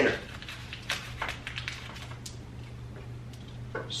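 Faint, scattered clicks and light taps of small metal parts being handled on a countertop, over a steady low hum.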